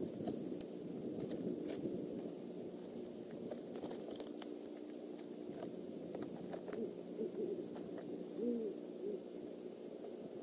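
Great horned owl hooting: low, soft hoots over a steady background hum, with a few faint ticks in the first half.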